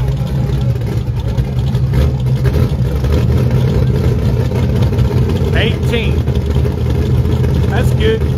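Engines of small-tire drag cars idling at the starting line: a loud, steady low rumble.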